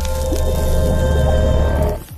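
Intro music with a deep steady bass rumble and held tones under a noisy, hissing splash-like sound effect, falling away right at the end.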